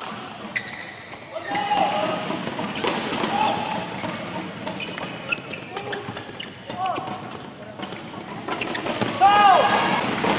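A badminton rally: sharp racket strikes on the shuttlecock and short squeaks of shoes on the court mat. About nine seconds in comes a louder shout as the point is won.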